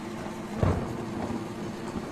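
A single soft, low thump about half a second in, over steady low background noise.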